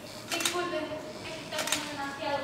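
High-pitched voices of stage actors speaking, with two sharp clicks, one about half a second in and one near the end.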